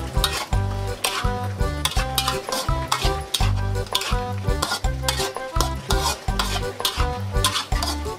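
Metal spatula scraping and tossing luffa and minced chicken around a steel wok while they stir-fry, with many quick sharp scrapes and clicks on the metal and a light sizzle. Background music with a steady beat plays underneath.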